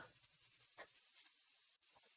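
Near silence, with a few faint, short scratches of a stylus writing on a tablet between about half a second and one second in.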